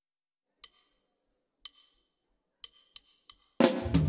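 A drummer's count-in: five sharp clicks, the first three about a second apart and the last two quicker. About three and a half seconds in, the full live band comes in loudly with drums and bass.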